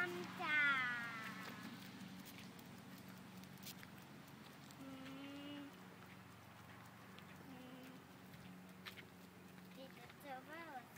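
A high-pitched cry that wavers and falls in pitch, about half a second to a second and a half in. Fainter short calls follow around the middle and again near the three-quarter mark, over a steady low hum.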